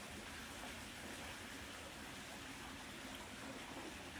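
Faint, steady background hiss with no distinct sound standing out.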